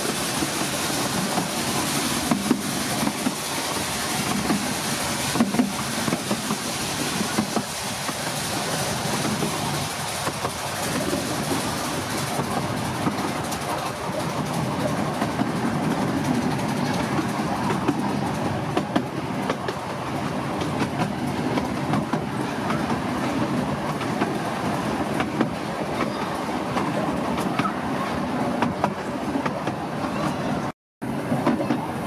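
Miniature railway train running along its track: a steady rumble of wheels on rail, scattered with light clicks.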